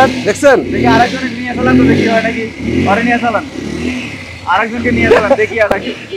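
Roadmaster Delight 100 motorcycle engine running.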